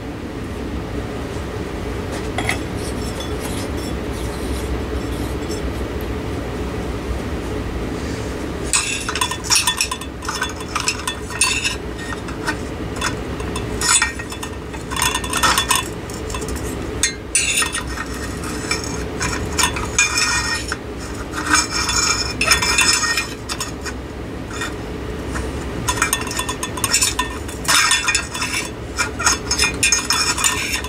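Glass light shade on a ceiling-fan light kit being worked loose with a screwdriver: irregular clinking and scraping of metal against glass, starting about nine seconds in, over a steady low hum.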